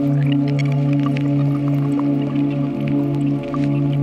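Ambient eurorack modular synthesizer music with reverb: a steady low drone chord held throughout, with scattered short, drip-like blips sprinkled above it.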